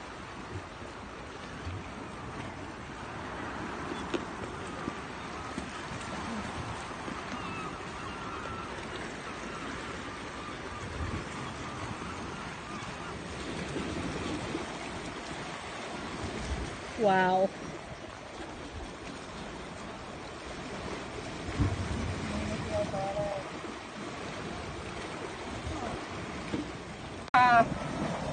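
Sea washing against a rocky shoreline, a steady rush of surf. A short pitched call cuts through it about two-thirds of the way in, and another pitched sound starts just before the end.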